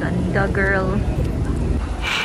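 Busy airport terminal ambience: a steady low rumble with a brief, high-pitched voice about half a second in.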